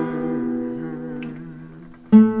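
A nylon-string guitar chord left ringing, fading steadily away over two seconds, with a low wavering held note beneath it.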